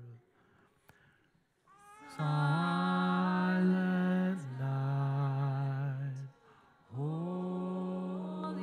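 Congregation singing a slow hymn without accompaniment, in long held notes. A short pause comes at the start, and singing comes back in about two seconds in, with another brief break between phrases near the end.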